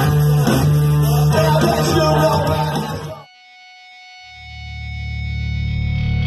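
Live nu-metal band playing loud distorted electric guitar, bass guitar and drums, cut off abruptly about three seconds in. After a brief dip, a low held bass note swells up under a faint steady tone.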